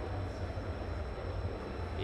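Steady low background rumble with a faint even hiss, a pause in speech with no other event standing out.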